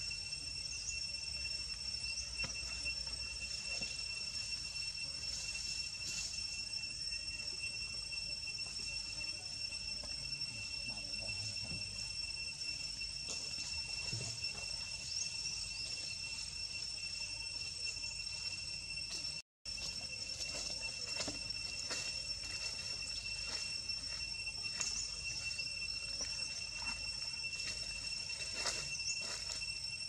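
A steady high-pitched insect drone, one unbroken whine with a higher overtone, over faint short chirps and scattered small clicks. The sound drops out completely for an instant a little past the middle.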